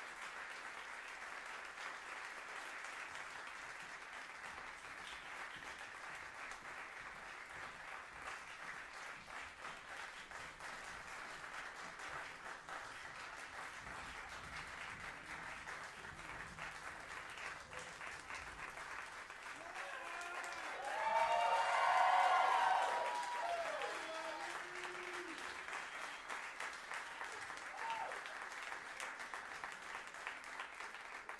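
Audience applauding steadily throughout, with a burst of cheering and whooping voices about two-thirds of the way through that is the loudest moment, before the clapping carries on.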